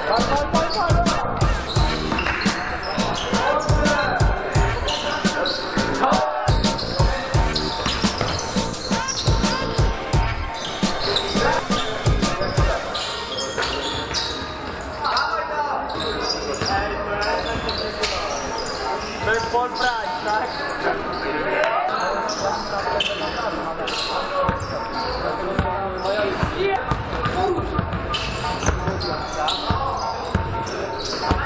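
A basketball bouncing on an indoor court floor during a game, with short sharp knocks coming thickest in the first half, and players' voices calling out in the hall.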